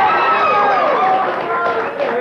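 Studio audience applauding, with voices calling out over the clapping.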